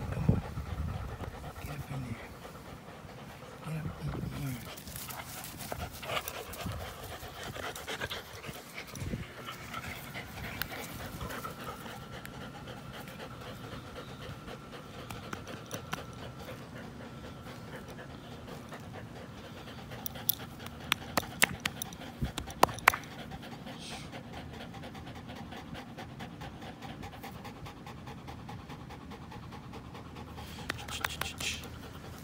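An American pit bull terrier and a Belgian Malinois mix panting as they tug on a braided rope toy. A run of sharp clicks comes about twenty seconds in.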